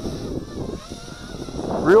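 Eachine Wizard X220 racing quadcopter's brushless motors and triblade propellers whining in flight at a distance, the pitch rising and falling with the throttle, under wind rumble on the microphone.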